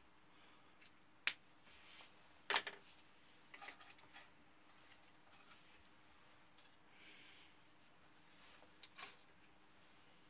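A few sharp, light clicks and knocks, the loudest about two and a half seconds in, with soft rustling between: a wooden ship model and its spars being handled and shifted.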